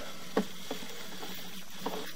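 Steady low background noise with three short knocks, as a sewer inspection camera's push cable is pulled back out of the pipe.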